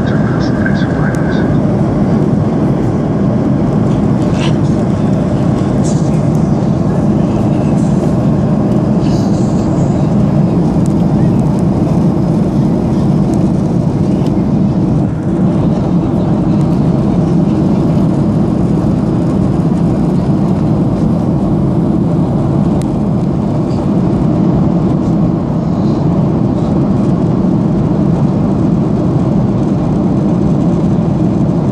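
Steady cabin noise of a Boeing 737 in descent, heard from inside the cabin over the wing: an even, dense low rush of engine and airflow, with the speed brakes raised on the wing.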